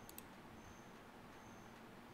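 Near silence: room tone, with a faint double click of a computer mouse just after the start.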